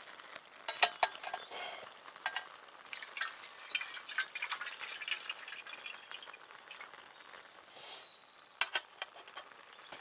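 A metal mess tin set onto a small folding metal stove with a sharp clank about a second in, then water poured into the tin for a few seconds. A couple of metal clinks near the end as the lid goes on.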